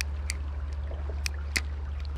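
Creek water running: a steady noise with a low rumble under it, and three faint clicks.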